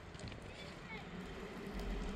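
Pickup truck engine running at low revs as the truck starts to move off and turn, with a deeper rumble coming in near the end.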